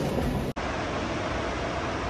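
A steady, even hiss begins after an abrupt cut about half a second in. Before the cut there is a brief stretch of dining-hall room noise.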